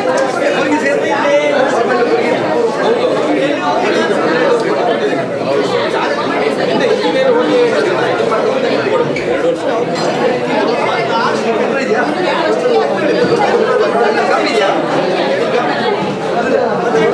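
Many people talking at once in a large hall: a steady, overlapping chatter with no single voice standing out.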